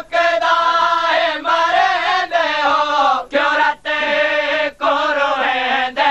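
Men's voices chanting a Punjabi noha, a Shia mourning lament, in loud melodic phrases broken by short pauses for breath.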